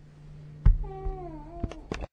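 A loud thump about two-thirds of a second in, then a single high call that falls in pitch for nearly a second, and two soft clicks near the end, over a low steady hum.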